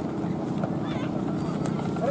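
Crowd of people calling and shouting over a steady low rumble, with wind on the microphone.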